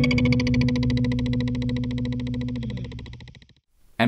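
Electric guitar through a Meris Polymoon multi-tap modulated delay pedal: a held low note rings out with a fast, even pulsing from the modulated delay repeats, dips slightly in pitch and fades out about three and a half seconds in.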